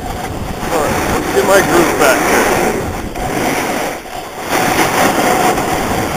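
Steady rushing noise from fast movement down the mountain, with a voice calling out briefly about one and a half to two and a half seconds in.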